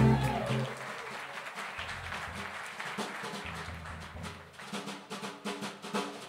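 Audience applause over a jazz drum kit played sparsely, with a few low notes, breaking into a quick run of sharp snare and cymbal strokes near the end.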